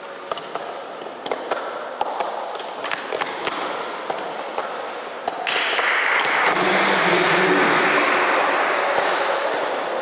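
Plastic sport stacking cups rapidly stacked up and down on a mat during a doubles cycle, a quick run of light clicks and taps. About halfway through, a louder steady rushing noise joins in for a few seconds, then fades.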